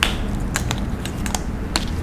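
About half a dozen sharp clicks, irregularly spaced, over a steady low hum.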